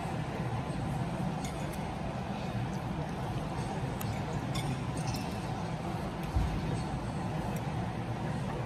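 Light clinks of a metal spoon against a bowl and tableware, a scatter of short taps over steady dining-room noise. A single dull thump comes about six seconds in.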